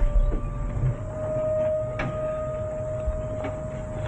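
A steady held tone over a low rumble, with a single sharp click about halfway through.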